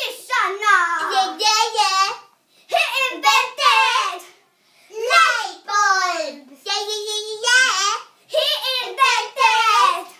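Young girls singing unaccompanied in short, lively phrases, with one longer held note about seven seconds in.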